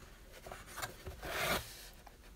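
Stacks of baseball cards sliding and rubbing against a cardboard box and each other as they are handled, building to the loudest scrape about a second and a half in.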